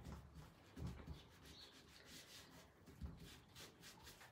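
Faint rubbing of a scrunched ball of cling film worked over freshly laid rice paper on a cabinet door, smoothing it flat and pressing out wrinkles.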